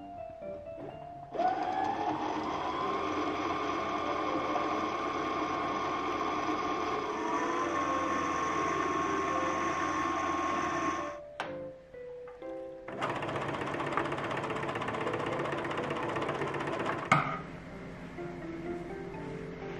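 Computerized sewing machine motor running. About a second and a half in it spins up with a rising whine, then runs steadily and stops at about eleven seconds; the first run is the machine winding a new bobbin. After a short pause it runs again for about four seconds and ends with a sharp click.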